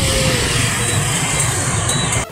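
Busy motorbike street traffic: engines running close by in a loud, steady wash of noise.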